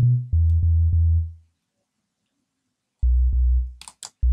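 Sub bass line played on the DX10 FM synth (eFlute preset) in FL Studio: a few sustained low notes, a gap of about a second and a half, then another low note near the end. A short click falls just before the end.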